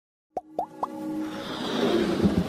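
Electronic logo-intro sound effects: three quick plops about a quarter second apart, each sliding up in pitch, followed by a whoosh that grows louder toward the end.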